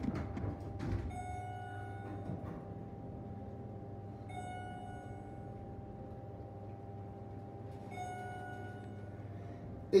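Schindler hydraulic elevator car going down, with a steady low hum throughout. A few light clicks sound in the first second. A bell-like chime rings three times, about three to four seconds apart, as the car passes floors.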